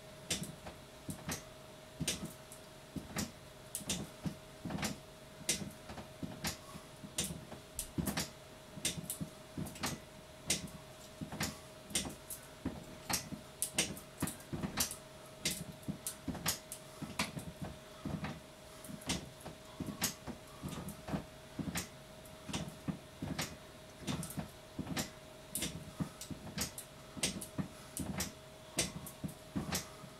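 Mini stair stepper machine clicking and knocking with each step, a steady rhythm of about two sharp clicks a second.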